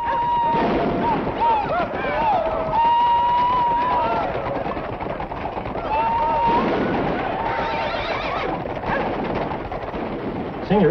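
A group of horses galloping, with riders whooping and yelling over the hoofbeats.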